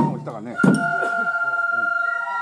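Japanese bamboo flute playing long held notes as accompaniment to the lion dance, with one sharp drum stroke a little over half a second in. Voices are heard under the flute.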